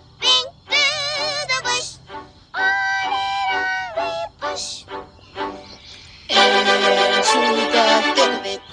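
Pitch-shifted children's cartoon song: sung lines with a wavering vibrato, then held notes, then a loud sustained chord from about six seconds in.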